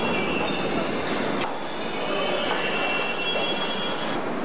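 A New York City subway train running on the rails, with thin high-pitched wheel squeal over the running noise. Two sharp clicks come a little over a second in.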